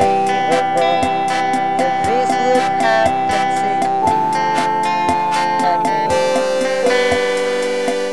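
Indie pop band playing an instrumental passage: strummed guitars over a steady drum beat, with a long held high note that steps up in pitch about four seconds in.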